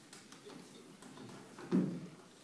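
Hall ambience before a band plays: faint small clicks and rustles with no music, and one short louder sound near the end.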